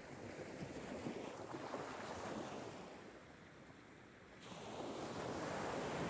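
Ocean surf washing onto a beach: one wave swells and ebbs away, and a second rolls in about four and a half seconds in.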